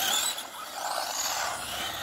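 Battery-powered RC short-course trucks driving on asphalt: a faint high motor whine that rises and falls as they speed up and slow, over tyre noise.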